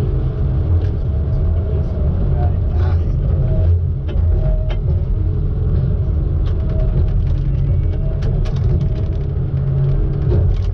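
Diesel engine of a Tigercat knuckleboom loader running steadily under hydraulic load, heard as a loud low rumble from inside the cab. Scattered knocks and clicks come as the grapple handles logs, most of them in the second half.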